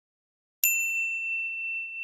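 A single bright bell-like ding: it strikes sharply about half a second in and rings on as one clear high tone, slowly fading.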